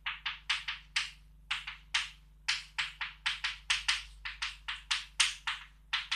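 Chalk writing on a blackboard: a quick run of short scratchy strokes, each beginning with a tap of the chalk, about four a second.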